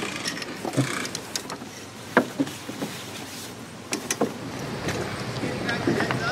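Scattered knocks, clicks and rustling from handling a small sailing dinghy's mast, sail and rigging, over a steady background wash.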